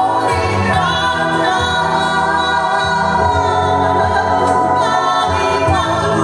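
A woman singing a song live, in long held notes, with other voices singing harmonies and a sustained band accompaniment behind her.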